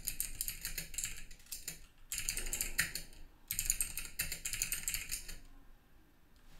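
Computer keyboard being typed on in three runs of key clicks as shell commands are entered.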